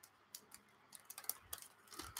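Faint, scattered light clicks and ticks of plastic model-kit parts in their bags being handled and put back into the box.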